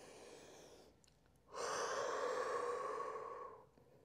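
A woman taking a slow deep breath: a faint in-breath, then a long slow out-breath blown through pursed lips, a breathy hiss lasting about two seconds that stops just before the end.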